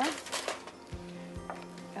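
Faint background music, with steady held notes.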